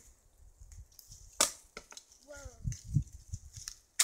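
A wooden stick cracking sharply about a second and a half in, followed by a few smaller snaps, and another sharp crack of wood right at the end.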